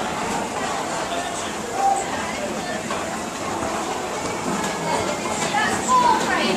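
Indistinct chatter of a group of people talking at once, a steady murmur of overlapping voices with no single voice standing out.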